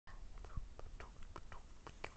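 Faint whispering with a few small scattered clicks.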